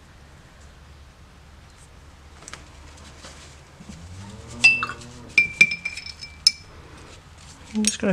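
Paintbrush clinking against a hard paint container as it picks up more paint: about five or six sharp, briefly ringing clinks over roughly two seconds, starting about four and a half seconds in.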